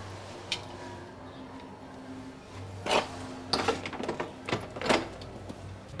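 A door being opened: a click, then a run of sharp clicks and knocks from the latch and handling about three to five seconds in, over a low steady hum.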